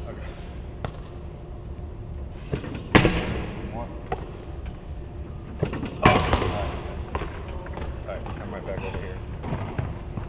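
Two loud handball thuds about three seconds apart, each followed by a long echo from the large empty arena, with a few lighter knocks between them.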